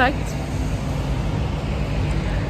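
Steady street traffic noise, a low rumble of road vehicles going by.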